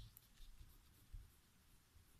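Faint scratching of a pen writing on a paper worksheet, with a few soft knocks of the hand on the page.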